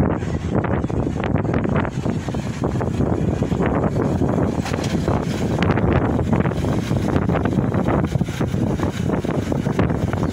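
Wind blowing across the microphone, a loud, steady low rumble that flutters in level.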